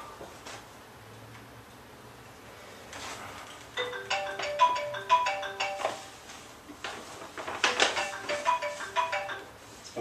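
Smartphone timer alarm going off: a short melody of clear pitched notes, played twice, marking the end of a one-minute timed set.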